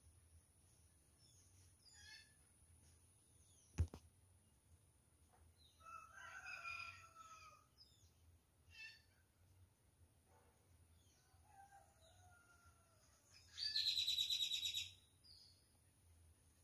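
Outdoor village ambience: a faint rooster crows about six seconds in, with scattered fainter bird calls. Near the end comes a loud, high-pitched rapid rattling trill lasting over a second, and a single sharp click sounds just before four seconds in.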